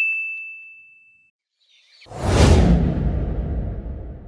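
A bright 'ting' ding, one clear ringing tone that dies away over about a second. About two seconds in, a whoosh sweeps in with a deep rumble under it, swelling quickly to the loudest point and then trailing off.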